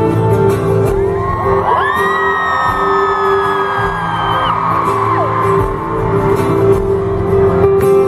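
Live acoustic guitar music with steady held notes and a few percussive knocks. From about a second in, several high voices from the audience scream and whoop for about four seconds.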